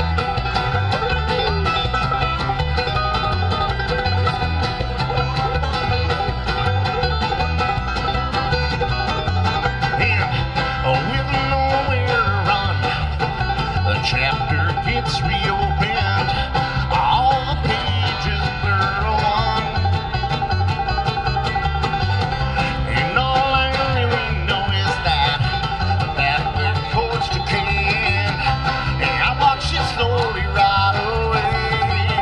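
Live acoustic string band playing an instrumental break: banjo picking over strummed acoustic guitar, with an upright bass keeping a steady beat.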